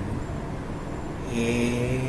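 A pause in a man's speech with a low steady hum, then about one and a half seconds in the monk draws out a single syllable on an even pitch, close to the microphone.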